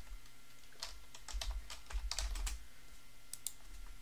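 Typing on a computer keyboard: a quick run of light key clicks through the middle, then two more clicks near the end.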